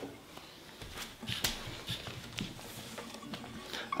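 Faint handling noise: scattered light clicks and knocks as a player shifts position with an acoustic guitar and moves closer.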